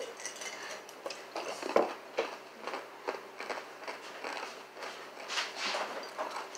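Scattered light clicks and knocks of things being handled at a table, one sharper knock about two seconds in, with a short rustle near the end.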